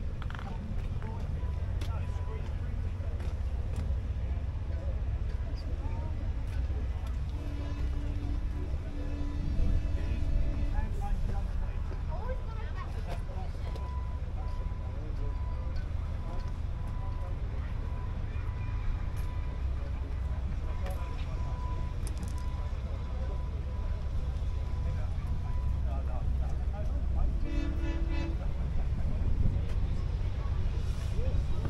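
Outdoor car-show background: a steady low rumble with voices in the background. A horn sounds a steady note twice, about a third of the way in, and once more, briefly, near the end.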